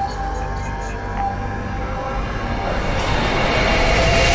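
Cinematic intro sound design: a deep steady rumble with faint high chiming tones, swelling into a rising rush of noise near the end.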